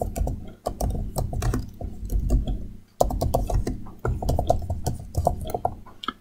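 Typing on a computer keyboard: a quick, uneven run of key clicks, with a short pause a little before halfway.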